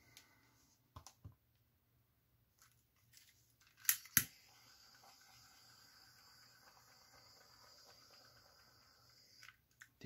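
A few light clicks, then two sharp clicks close together about four seconds in, followed by a faint steady hiss that lasts about five seconds and stops shortly before the end.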